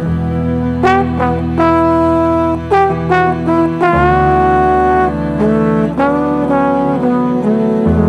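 Instrumental music: a slow trombone melody of held notes, some sliding up into pitch, over sustained low notes.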